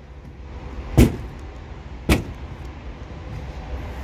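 Two heavy thumps about a second apart, the first the louder: footsteps up onto the back of a pickup truck.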